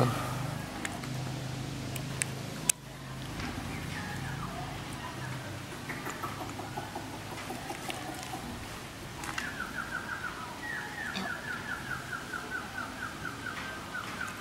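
Faint bird calls in the background, ending in a rapid run of repeated chirps, about four or five a second, over the last five seconds.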